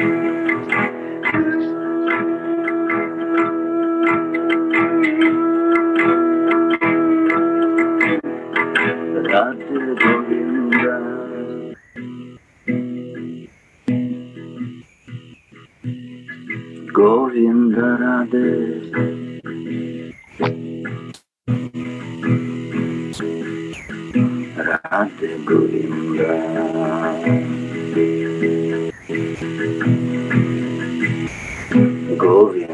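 A man sings a Hindu devotional song (bhajan) to his own strummed acoustic guitar, heard over a video-call connection. In the middle the sound drops out briefly several times before the guitar and voice come back.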